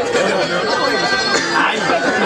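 A crowd of many voices talking and calling out over one another, loud and without a break.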